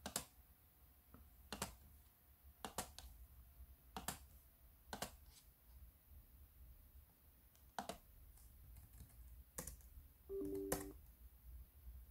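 Faint, scattered clicks of a computer's keys and mouse buttons, about nine in all, spaced irregularly. About ten seconds in comes a brief low two-note tone lasting about half a second.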